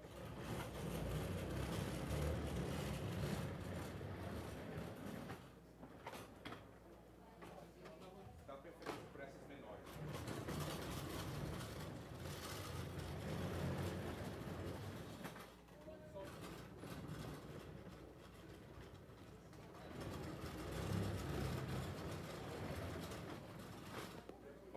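Indistinct voices of people talking away from the microphone, muffled under a low rumble, with a few soft knocks.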